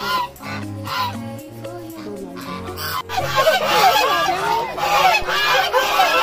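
A flock of domestic geese honking. There are scattered calls at first, then from about halfway many geese call at once, louder and denser.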